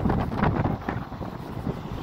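Wind buffeting the phone's microphone: an uneven, gusting rumble.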